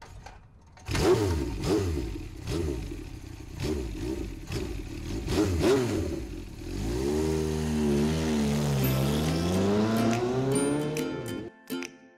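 Motorcycle engine sound effect, revving in a run of quick swells. It then settles into a steadier engine note that dips and climbs again before cutting off suddenly near the end.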